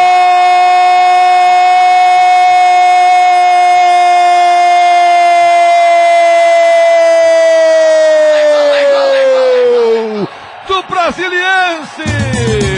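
A Brazilian radio football announcer's goal cry: one long held 'gooool' at a steady pitch for about eight seconds, which then slides down and breaks into short wavering calls near the end.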